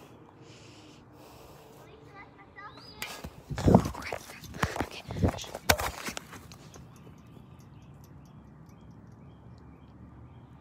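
A person jumping down from a low brick ledge onto grass: a loud thud of landing a little under four seconds in, followed over the next two seconds by several more knocks and rustles of feet on the grass, then a quiet outdoor background.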